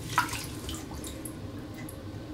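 Faint water trickling and dripping in a bathtub around an upside-down RC boat hull as its flood chamber fills with water, with a small splash just after the start.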